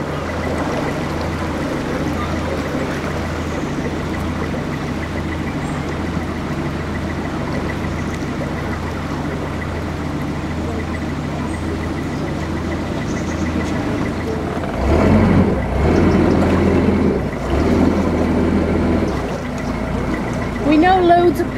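A narrowboat's Beta Marine diesel engine running steadily under way, a low even drone that grows louder for a few seconds near the end.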